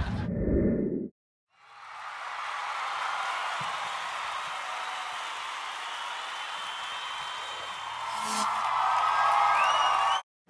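Channel end-card sound effects. A short low burst cuts off about a second in, then after a brief silence a steady noisy swell with no words builds slowly and grows louder near the end, with a few faint rising glides.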